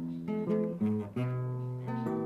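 Nylon-string classical guitar played by hand: a run of single plucked notes, several a second, with a low bass note held for most of a second near the end.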